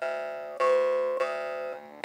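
Ægishjálmur D2 jaw harp (drymba) played with a steady twangy drone. It is plucked four times about half a second apart, and the overtone melody jumps between a higher and a lower note as the player's mouth changes shape.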